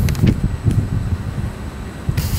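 Low, uneven rumble picked up by a desk microphone, with a few faint rustles of loose paper sheets being handled.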